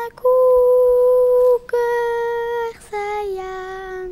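A young girl's voice singing unaccompanied in long, held notes, each about a second, with short breaks between them; the last note dips slightly in pitch and is held.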